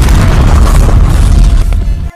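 Explosion sound effect: one long, loud boom with heavy bass that dies away near the end.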